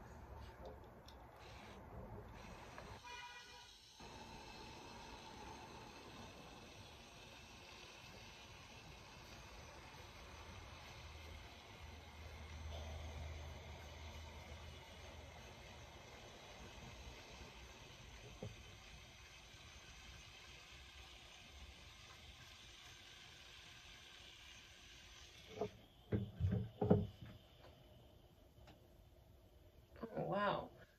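L'Oréal Steampod 3.0 steam flat iron hissing faintly and steadily as it puffs steam while being drawn slowly down a thick section of hair. The hiss stops about 26 seconds in, followed by a few short, louder sounds.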